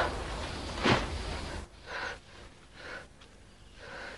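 The tail of gunfire fading at the start, a single sharp shot about a second in, then a wounded man's short gasping breaths, three of them about a second apart.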